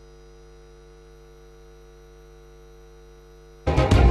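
A steady electrical hum with its overtones in the broadcast audio. Loud music cuts in suddenly just before the end.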